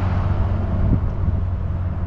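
A steady low rumble of an idling vehicle engine, with a faint knock about a second in.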